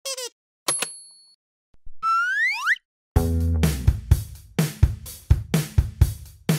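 Cartoon sound effects for an animated logo: a short falling boing, a click with a high ringing ding, then a rising whistle-like glide. About three seconds in, upbeat children's music with a steady beat starts, about two beats a second.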